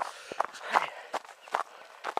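A runner's footsteps on a rough, stony track: a string of short knocks, roughly two or three a second.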